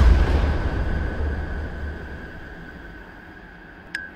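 Explosion sound effect: a deep boom at the start whose rumble fades away over about three seconds, with a steady high tone beneath it and a sharp click near the end.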